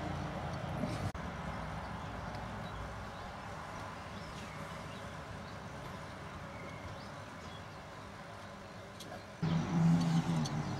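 Steady low background noise, a rumble and hiss without distinct events, broken briefly about a second in. Shortly before the end a louder sound with a low pitched pattern begins.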